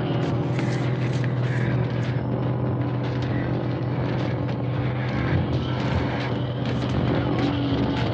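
Steady low engine drone with a constant hum and irregular faint knocks, like a vehicle or aircraft engine running outside.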